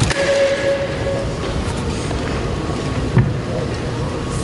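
A wooden board cracks under a karate strike. A steady held tone of about a second follows. A second, heavier thump comes about three seconds in, over the constant murmur of an arena crowd.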